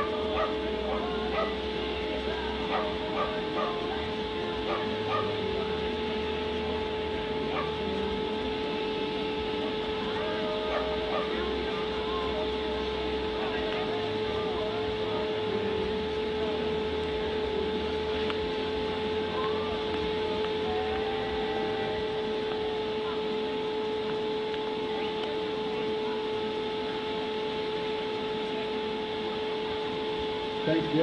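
A steady hum holding one pitch over a background haze, with faint distant voices and short, scattered high calls that are denser in the first dozen seconds.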